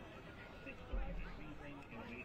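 Faint, low conversation in the background, with a low rumble that comes in about a second in.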